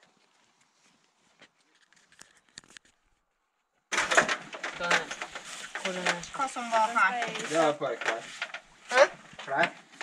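Near silence with a few faint ticks. About four seconds in it cuts abruptly to people talking close by, with scattered knocks.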